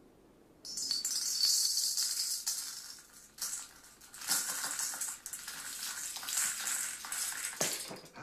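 Gold nuggets rattling and clinking as they are tipped from a copper scoop into a brass balance pan, a dense metallic rattle that starts about a second in.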